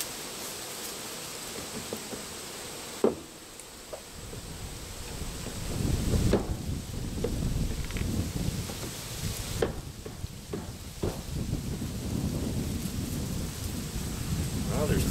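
Wind buffeting the microphone in a low rumble that sets in about halfway through, with a few short wooden knocks as hive frames are handled and set down at the truck.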